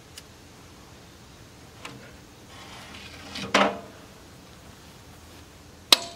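Metal handling sounds from an offset barrel smoker: a few light knocks, a rising rasp that ends in a loud scraping clatter about three and a half seconds in, then a sharp metal clank just before the end.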